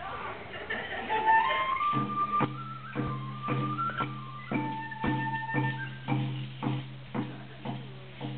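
Flute playing a melody that climbs in steps and then holds long notes, joined about two seconds in by a steady drum beat of about two strokes a second.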